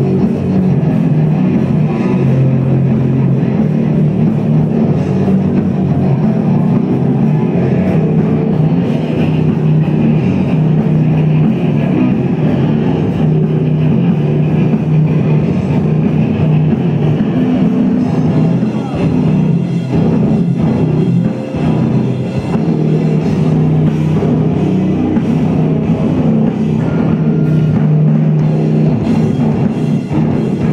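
A heavy rock band playing live and loud, with distorted electric guitars over a pounding drum kit.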